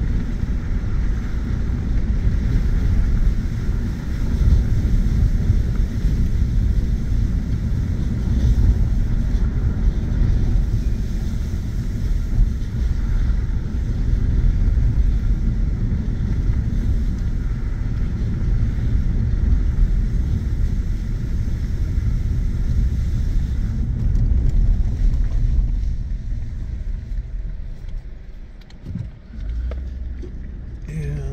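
Steady rumble of a pickup truck driving a dirt road, heard from inside the cab: tyres on the packed dirt and the engine running. The rumble eases and drops near the end as the truck slows.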